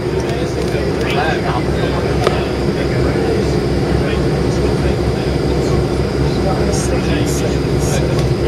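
Steady engine drone and cabin rumble heard from inside a slow-moving vehicle, with a low pulsing hum under it and faint voices in the background.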